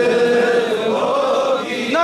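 A man's voice reciting a naat unaccompanied, in a chant-like melody. He holds one long sung note, and a new phrase begins near the end.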